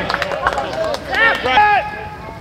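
Several men's voices shouting and calling out on a football pitch in short rising and falling cries, loudest about a second and a half in.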